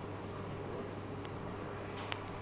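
Faint scratching sounds and one light click about a second in, over a steady low hum.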